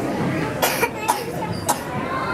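A young girl coughing into her elbow, a few short coughs in quick succession over the murmur of a busy indoor hall.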